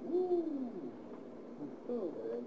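A person's brief wordless vocal sound, rising then falling in pitch and lasting about two-thirds of a second, near the start, followed by a quiet pause in the room.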